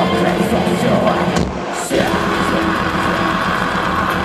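A symphonic black metal band playing loud live, recorded from within the crowd. The music breaks off briefly about a second and a half in, then the full band comes back in about half a second later.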